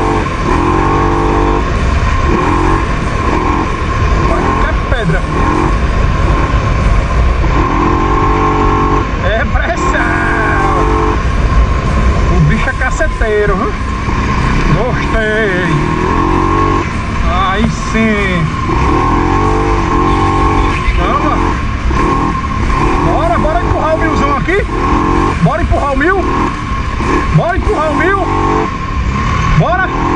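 Segway Snarler 570 ATV's single-cylinder engine running under way on a dirt trail, its pitch rising and falling with the throttle.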